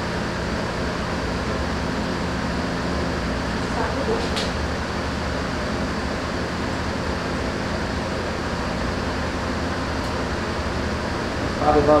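Steady fan-like hum and hiss, with one short click about four seconds in.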